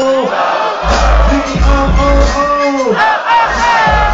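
A concert crowd shouting and chanting over a hip-hop beat with heavy bass. The bass drops out briefly at the start and again about three seconds in.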